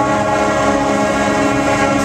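Marching-band brass section (trumpets, trombones, saxophones and sousaphones) holding one loud, sustained chord: the closing chord of the piece.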